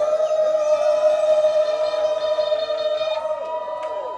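Amplified live rock music from a band on stage: one long held note rings steadily, with short sliding notes at the start and again near the end.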